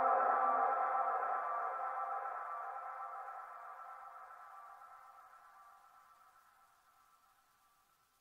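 Background music ending on a held chord of several steady tones that slowly fades away, gone about five seconds in.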